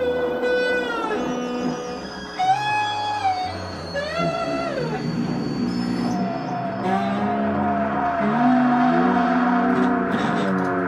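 Guitar-led music with held notes that bend and slide in pitch, over a steady low bass line.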